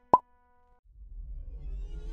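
A single short pop sound effect, a quick 'plop', about a tenth of a second in. Background music fades in from about a second in.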